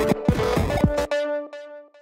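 Electronic beat played back from a music production session: deep drum hits that each drop steeply in pitch, over a held tone. It cuts off about a second in, leaving a ringing tone that fades away.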